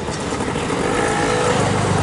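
A motorcycle riding past close by at low speed, its engine heard over steady street noise.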